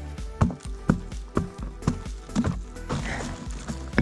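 Background music, over a run of short, sharp knocks and crumbles of dry anthill clods as a hand digs and breaks into the mound.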